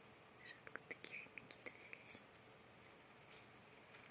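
Faint, small crunching clicks of a hamster gnawing and chewing its cage bedding, clustered in the first half and then trailing off.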